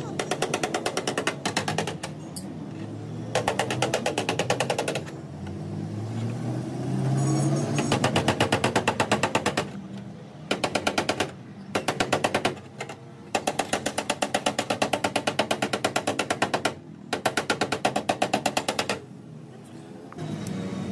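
Rapid hammer taps on a car's sheet-metal wheel-arch lip, in bursts of about eight to ten blows a second with short pauses between: a dent-repair hammer knocking the dented panel edge back into shape.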